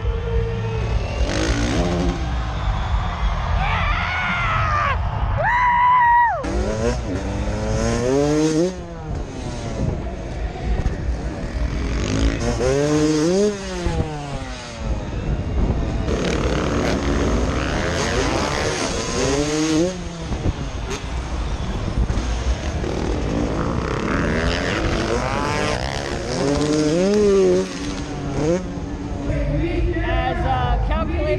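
Dirt bikes revving, engine pitch climbing and falling again and again, over a steady low rumble.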